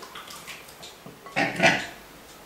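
Runny flour batter being handled in a glass bowl with a ladle and whisk, mostly quiet, with one short noise about one and a half seconds in.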